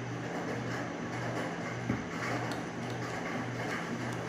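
Steady rain on a tin roof, an even hiss throughout, with a low hum underneath that pulses about twice a second.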